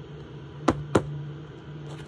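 Two sharp clicks about a quarter of a second apart, small items of a diamond painting kit being handled on the table, over a steady low hum.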